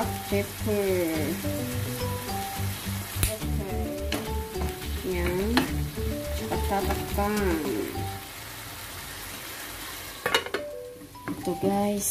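Sayote and tomato sizzling in a frying pan, stirred with a wooden spoon that knocks against the pan a few times. Background music with a steady beat plays over it for the first two-thirds and then stops, leaving the sizzle quieter near the end.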